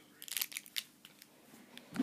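Plastic instant-ramen packet being handled, with a quick cluster of short crinkles and crackles in the first second and a couple of faint ticks near the end.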